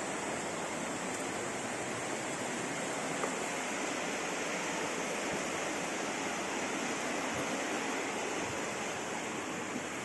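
A steady, even rushing noise with no breaks or rhythm, like running water.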